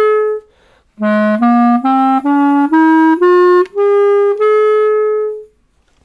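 A five-key period clarinet plays a short note, then an ascending scale of eight notes in its low register, the top note held. The run goes up without a gap because the added key provides the note that the instrument was missing.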